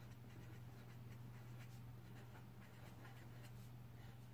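Faint scratching of a Faber-Castell pen writing on paper in short, irregular strokes, over a steady low hum.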